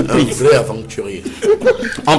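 A man chuckling, with snatches of voice in between.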